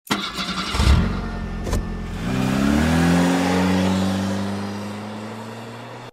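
Car engine revving: its pitch rises about two seconds in, then holds steady as the sound fades away. Two sharp knocks come in the first two seconds.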